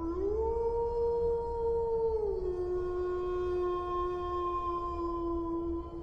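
A single long canine howl: it rises at the start, holds one note, then drops to a lower note about two seconds in and holds that until it ends.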